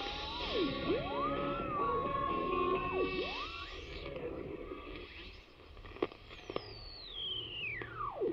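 Portable AM radio being tuned across the medium-wave band. Whistles swoop up and down in pitch as the dial passes stations, over faint jumbled station audio and static, with two sharp clicks about six seconds in and a long whistle falling steadily near the end.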